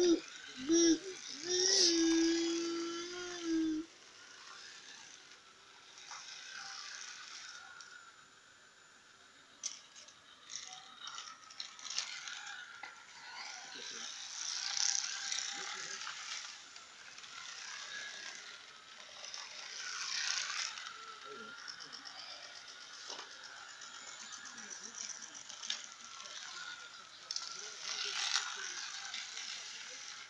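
Battery-powered light-up toy car running along a flexible ridged plastic track, its small motor and wheels making a rattling buzz with scattered clicks that grows louder and quieter as the car moves. A person's voice is heard in the first few seconds.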